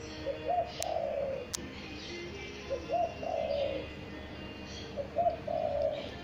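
Spotted dove cooing: three phrases about two and a half seconds apart, each a short note followed by a longer one. Two sharp clicks come about a second in.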